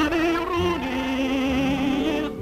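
A man singing with orchestra on an old 16mm film soundtrack, holding long notes with a wide vibrato and stepping down to a lower held note a little under a second in.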